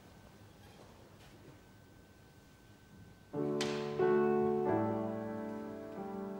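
Quiet room tone, then about three seconds in an upright piano begins an introduction, playing held chords that change every second or so.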